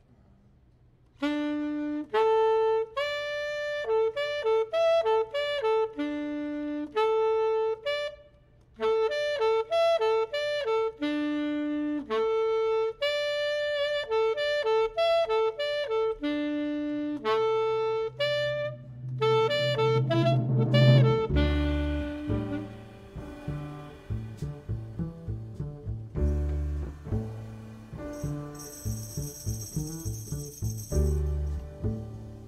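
Jazz saxophone playing a melody in short phrases, nearly alone. About twenty seconds in, the double bass and drums come in and the band starts to swing, with a cymbal ringing near the end.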